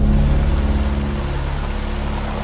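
Steady, heavy rain falling, cutting in suddenly at the start, with low sustained music notes underneath.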